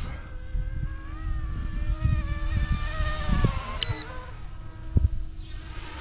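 Thin buzzing whine of a YUXIANG F09-S RC scale helicopter's electric motor and rotor in flight, its pitch wavering and dipping slightly a few seconds in, with wind rumbling on the microphone. A short high beep about four seconds in.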